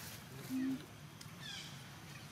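A short, low, single-pitched vocal note about half a second in, lifting slightly in pitch at its end, followed near the middle by faint, high, falling chirps.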